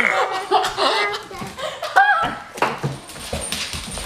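Family laughter and squeals mixed with the noise of two pet dogs play-wrestling with a person on the floor, with a short high-pitched cry about two seconds in.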